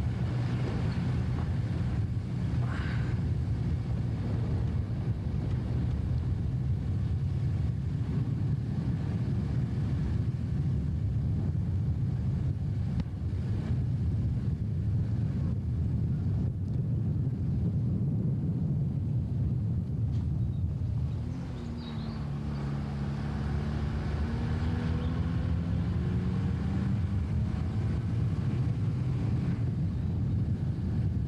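Vehicle moving along a winding road: a steady low rumble of engine and road noise. About 21 s in the sound dips briefly, then an engine tone rises and holds.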